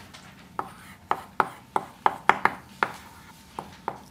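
Chalk writing on a blackboard: about ten sharp, irregular taps and short strokes as letters of a formula are written, the busiest stretch in the middle.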